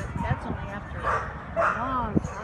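A dog barking and yipping in two short bursts, about a second in and again near the end.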